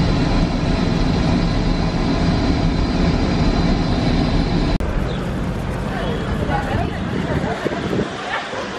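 Steady cabin noise of an airliner in flight, with a faint steady whine over it. About five seconds in it cuts off abruptly, giving way to quieter background noise with faint voices.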